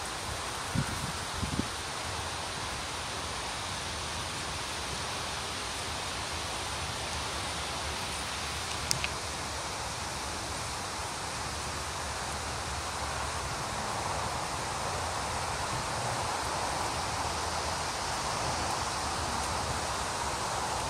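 Steady rustle of wind moving through arrow bamboo (Pseudosasa japonica) leaves, a little louder in the second half. There are a couple of faint knocks near the start and a short click about nine seconds in.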